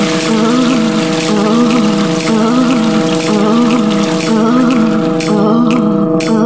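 Electroacoustic music: several steady droning tones held together, a wavering low figure repeating a little faster than once a second, and a hiss-like layer over the top.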